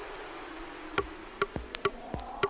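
Electronic music: a falling synth sweep fades out, then sharp clicky percussion hits, each with a short pitched blip, start about a second in and repeat at an uneven rhythm.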